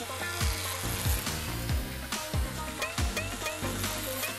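Remington electric hair clipper running and buzzing as it shaves through doll hair, a steady hissing buzz, with light background music over it.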